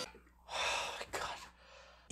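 A man's exasperated breathing: two audible breathy exhales, the first about half a second in and a shorter one just after a second.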